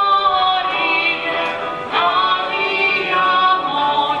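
Voices singing a slow hymn, with long held notes that change every half second or so.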